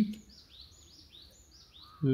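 Faint, quick run of short high chirps from a bird, about five a second for just over a second.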